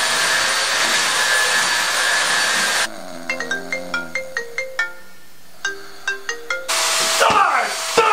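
Upright vacuum cleaner running loudly, cutting off about three seconds in. A phone ringtone then plays a short plucked-note tune twice. Near the end a loud noisy burst with quick falling tones returns.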